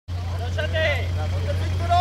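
People talking over the steady low drone of an off-road vehicle's engine running at constant revs.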